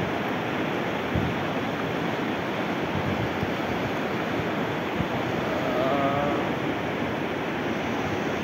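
Swollen, fast river current rushing steadily over rapids and stones, a dense continuous wash of water noise. A faint wavering voice-like sound is heard briefly a few seconds before the end.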